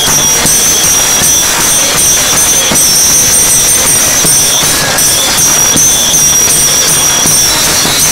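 Devotional procession music: small brass hand cymbals (taal) struck in a steady rhythm, ringing continuously, together with hand clapping and a hand drum.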